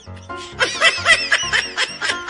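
High-pitched giggling laughter, in quick little peals, over background music with a steady beat.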